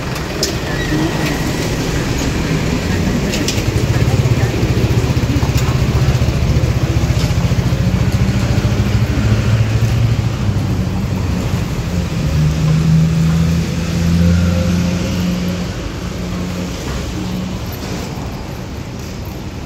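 Street traffic, with a motor vehicle's engine running close by: a steady low hum that builds a few seconds in and eases off near the end.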